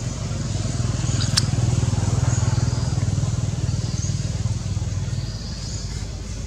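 Low, steady hum of a motor vehicle engine, swelling about two seconds in and then slowly fading, as of a vehicle passing by. A single sharp click sounds just over a second in.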